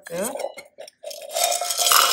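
Crumbly ragi (finger millet) murukku tipped from a stainless steel tin onto a steel plate: a dry, noisy rattle of the pieces on metal starting about halfway through.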